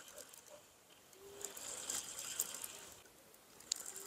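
Fishing reel being wound in, a faint clicking mechanical whir from about a second in until just past three seconds, as line is retrieved on a rod whose tip showed a bite that the bite alarm did not signal.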